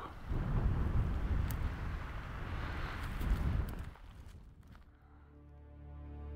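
Wind buffeting the camera microphone, a rough, gusty rumble for about four seconds that then dies away. Soft background music fades in near the end.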